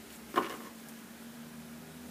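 A brief rustle of a tarot deck being handled as a card is turned up, about half a second in, over faint room hiss.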